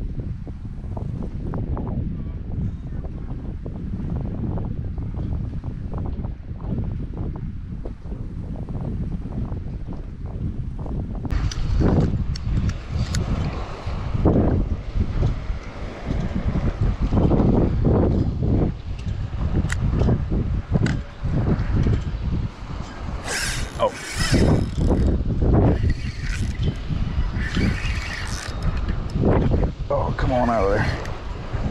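Wind buffeting the microphone throughout, growing louder about a third of the way in, with irregular clicks and knocks from handling the gear.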